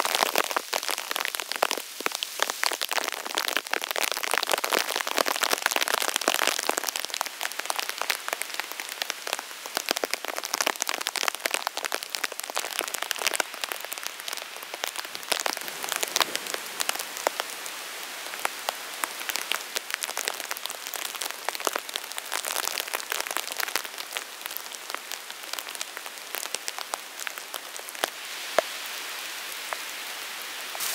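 Steady rain in a forest, with many separate drops ticking close by, a little heavier in the first several seconds and then easing slightly.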